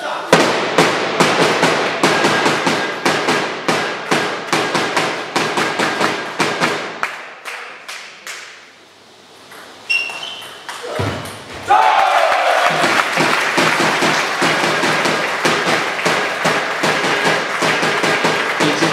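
Audience clapping in a sports hall, dying away; then a short table tennis rally with the ball pinging off bats and table, a short shout, and renewed clapping as the match point is won.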